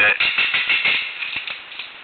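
A quick rattling run of sharp clicks, about ten a second, that fades away over the first second and a half, with one last click just after, then faint hiss.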